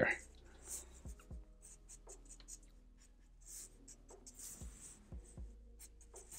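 Black felt-tip marker drawing short strokes on paper: a series of faint scratchy strokes, with a few soft low thuds between them.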